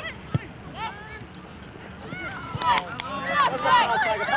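Many short, high calls overlap, growing louder and denser in the second half, with a single sharp knock near the start.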